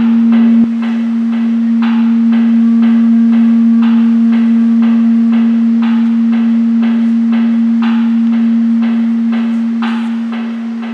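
An amplified string instrument played through a guitar amp: a steady low drone under a repeating pattern of struck notes, about two a second, with a stronger stroke about every two seconds. A louder burst cuts off suddenly just after the start.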